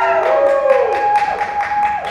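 A few people whooping with long, rising-and-falling calls over scattered hand clapping, about six claps a second.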